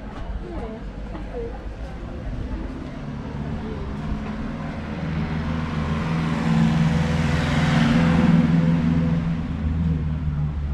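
A motor vehicle's engine running with a steady low hum, growing louder from about three seconds in to its loudest around eight seconds, then easing slightly.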